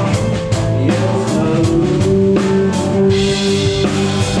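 A live rock band playing, with the drum kit loud and close, heard from the drummer's seat: steady drum and cymbal hits over sustained guitar and bass notes.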